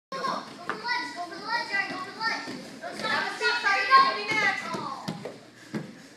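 Children's voices calling and shouting over one another in a large gym, fading out near the end, with a few short thumps.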